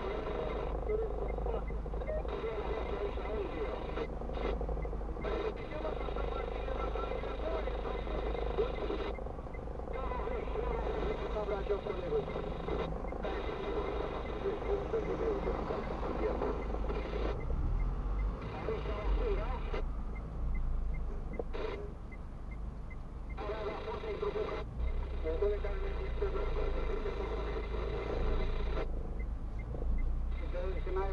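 Indistinct talk with short pauses, heard inside a car cabin over the steady low hum of the car standing at a red light.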